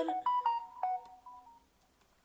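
A short electronic jingle of a few clear notes stepping up and down, like a phone ringtone or notification tone, fading out after about a second and a half.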